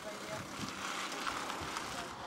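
Steady outdoor background noise with faint voices in it.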